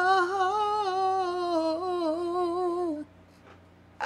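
A woman humming a cappella, holding one long note with a slight waver that drifts down a little and ends about three seconds in.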